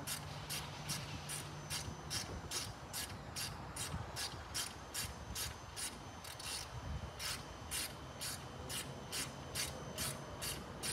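Insects calling outdoors in a steady rhythm of short, raspy, high-pitched pulses, about two and a half a second. A faint low hum runs under the first couple of seconds.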